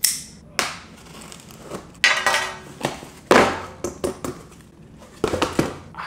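A small cardboard shipping box being cut and torn open by hand: a string of short rips, scrapes and knocks of cardboard and packing tape, the longest about two seconds in.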